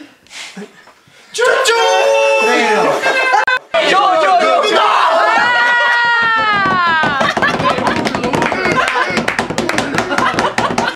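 A group of men's voices raised together in a loud chant around a table, with one long call sliding down in pitch about halfway through. Laughter and quick hand clapping follow.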